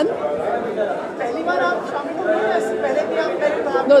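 Indistinct chatter: several voices talking at once, with no one voice standing out.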